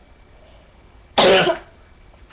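A single loud cough close to the microphone, a little over a second in, lasting about half a second.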